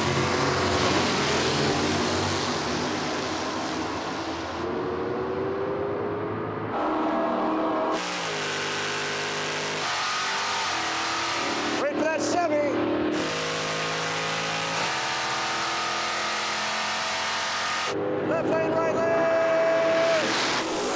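Drag-racing cars, a 1963 Chevy II and a 1972 Dodge Challenger, running down the strip at full throttle. The engine note climbs and jumps in pitch several times through the run.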